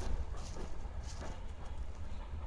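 Footsteps on dry dirt and gravel, a few irregular crunching steps, over a steady low rumble of wind buffeting the microphone.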